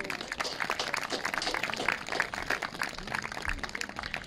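Crowd applause: many hands clapping in a dense, even patter that thins out near the end.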